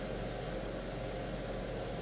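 Steady background hiss of room tone, with no distinct event.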